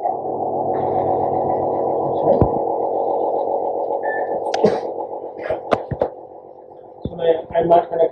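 Steady machine hum from the endoscopy equipment that starts suddenly and fades out about five to six seconds in, with a few sharp handling clicks from the endoscope and its fittings.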